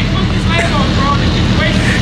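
Nissan GT-R's engine and exhaust running with a steady, evenly pulsing low rumble as the car rolls at low speed, heard from inside the cabin, with faint voices over it.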